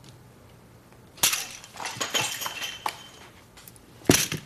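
Poker chips tossed into the pot as a bet: a sudden clatter about a second in, followed by lighter clicking and clinking of chips settling on the table.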